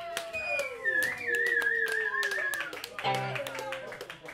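Audience clapping and cheering voices after a song ends. A long wavering high tone runs through the middle of the clapping.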